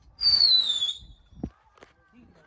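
A person's sharp whistle, a single falling whistle lasting under a second, of the kind pigeon keepers use to drive their flock. A short thump follows about a second later.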